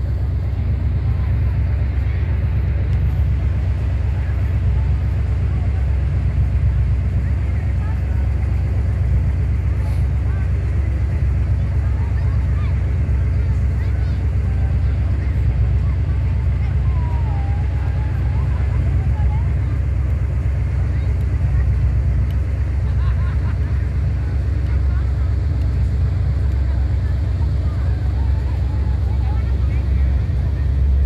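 A steady low rumble, with people talking faintly in the background.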